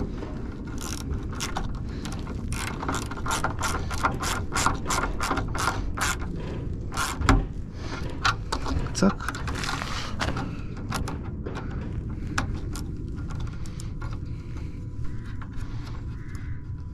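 Ratchet wrench clicking in quick strokes, about three clicks a second, as a nut is run on or off, slowing to scattered clicks in the last few seconds.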